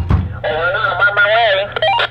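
A walkie-talkie transmission: a thin, tinny voice-like sound cut off at the top as through the radio's small speaker, ending in a quick chirp just before the end.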